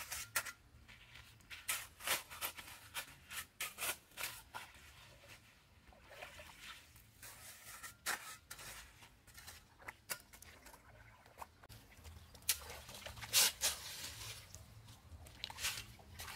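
Steel shovel blade cutting into and scraping through wet mud, an irregular series of short strokes, loudest in a cluster about three quarters of the way through.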